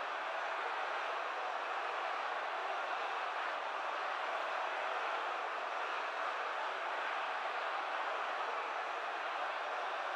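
A steady, even rushing noise with no distinct sounds in it.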